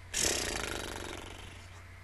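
A person's heavy, rough exhale or sigh straight into a close microphone, starting suddenly and fading away over about a second and a half.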